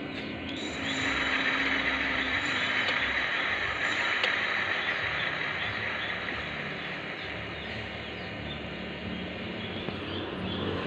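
Electric bicycle's rear BLDC hub motor, running off a single 12 V battery, spinning the rear wheel: a whirr that swells about a second in and then slowly dies away.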